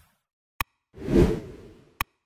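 Animated like-button sound effects: a sharp mouse click about half a second in, then a whoosh lasting about a second, and another click at the very end.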